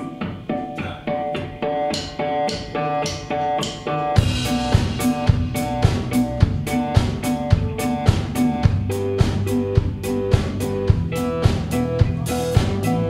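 Live rock band playing the opening of a song: a repeating guitar figure, then the drum kit and the rest of the band come in about four seconds in with a steady beat.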